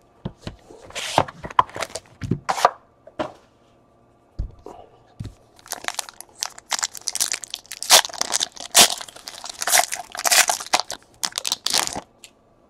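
A cardboard trading-card box being handled, with light clicks and a couple of low thumps. From about six seconds in, a foil card pack is torn open and its wrapper crinkles, the loudest part.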